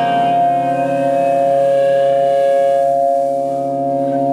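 Amplified electric guitars holding a steady, ringing chord drone, with no drums; the higher overtones fade out about three seconds in.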